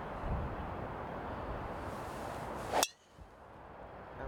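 A golf driver striking a ball off the tee: one sharp, loud metallic crack with a brief ring about three quarters of the way through, over steady background noise.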